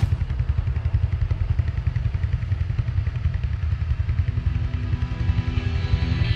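Harley-Davidson X440's 440 cc single-cylinder engine idling, a fast, low pulsing beat that starts abruptly.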